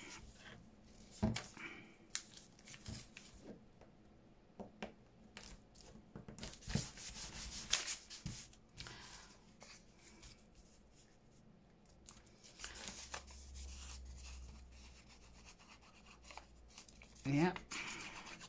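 Hands handling paper scraps: quiet rustles and light taps, with rubbing as a torn paper strip is pressed flat onto a book page.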